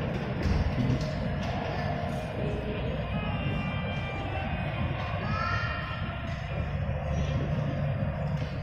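Airport terminal ambience: a steady low rumble with faint background music and distant voices.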